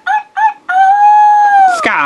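Talking Skye plush toy's recorded character voice playing from its built-in speaker: a few short, high-pitched syllables, then one long high call held for about a second that drops in pitch at the end.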